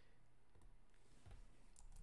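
Near silence: room tone, with a few faint computer mouse clicks.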